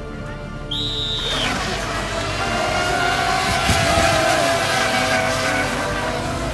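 A short, steady high whistle about a second in, then the whine of brushless RC racing boats accelerating away across the water with spray, which carries on to the end.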